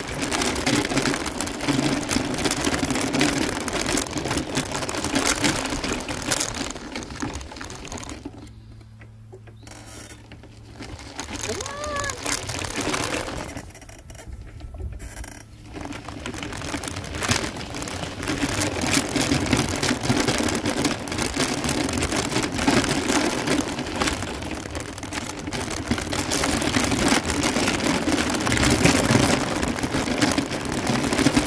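A small vehicle's motor hum and tyres crunching over a gravel road as it rolls along, dropping away twice in the middle where it slows or stops for a few seconds.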